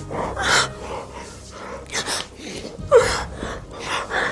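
A man breathing heavily in a series of gasps. The loudest gasp comes about three seconds in, with a voice in it that falls in pitch.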